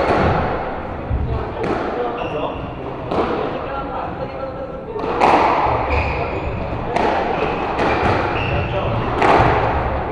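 Squash ball being struck by rackets and hitting the court walls in a rally: sharp knocks a second or two apart, each ringing briefly in the enclosed court.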